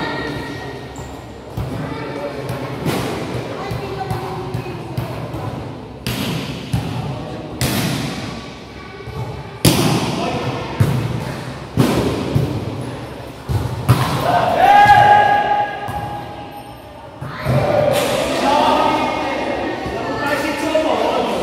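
A volleyball being hit and landing on a sports-hall court, a sharp echoing thud every second or two, about eight in all. Players' voices run between the hits, with one long loud call about two-thirds of the way through.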